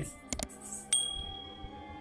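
Notification-bell chime sound effect: two quick clicks, then a bright ding about a second in that rings on and fades slowly, over faint background music.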